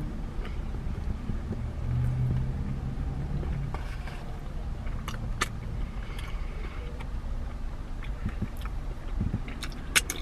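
Chewing and small crinkles of a paper food tray being handled, with scattered soft clicks, over a steady low hum inside a car.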